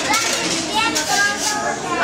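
Several people talking over one another, a steady hubbub of overlapping voices.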